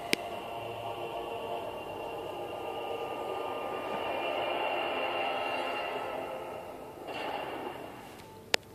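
A wordless drone of many steady layered tones from a cartoon soundtrack, played through laptop speakers. It swells to a peak about halfway through and fades near the end, with a sharp click just at the start.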